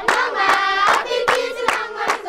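A group of children singing a song in a local Ghanaian language, with rhythmic hand clapping about two to three claps a second.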